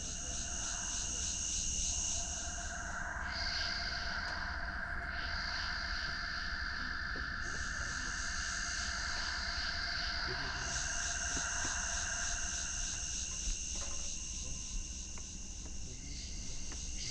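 A chorus of insects chirping, steady pulsing trills at several pitches that shift now and then.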